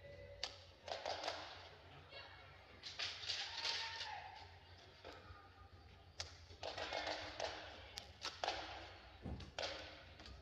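Badminton rally: sharp racket hits on the shuttlecock, roughly one every second or two, over the players' footwork on the court and a steady low hall hum.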